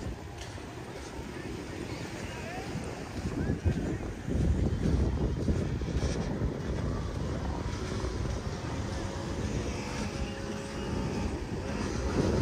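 Wind buffeting a handheld phone microphone while walking on a beach, a steady low rumble that grows stronger about four seconds in, with faint voices in the background.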